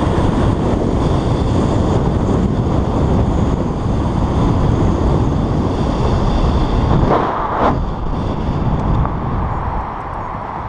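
Heavy wind noise buffeting the microphone of a fast-moving electric bike, a dense rumbling rush with road and traffic noise beneath it. About seven seconds in there is a brief louder whoosh.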